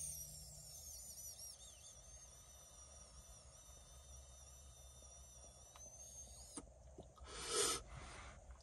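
Long draw on a THC vape cartridge on a battery set to its lowest temperature: a faint steady hiss with a wavering high whistle for about six and a half seconds, which stops suddenly. A short breath out follows near the end.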